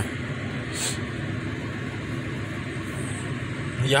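Steady low hum and hiss inside a car cabin, typical of an idling engine and blower, with a brief hiss about a second in.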